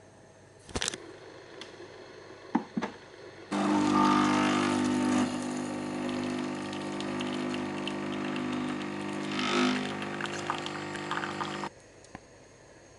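Bosch Tassimo pod coffee machine brewing: a click about a second in, then from about three and a half seconds its pump runs with a steady hum and hiss as coffee pours into the mug, stopping abruptly near the end.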